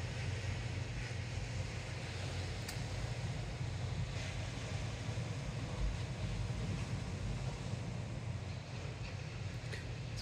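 Ocean surf: a steady, low rushing rumble of waves breaking.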